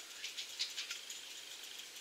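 Faint clicks and light rattling from fingers handling a metal nail stamping plate, over quiet room noise with a faint steady high tone.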